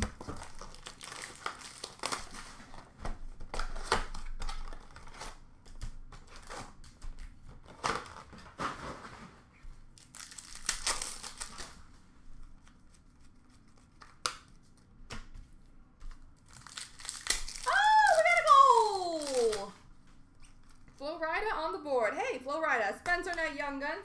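Plastic and foil trading-card pack wrappers crinkling and tearing open, in quick crackly bursts. Past the middle a loud pitched squeal slides steeply down in pitch, and near the end comes a wavering pitched sound.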